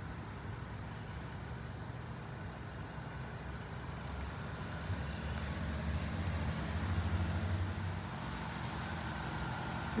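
A vehicle engine running at low revs: a steady low rumble that grows louder about five to eight seconds in, then eases.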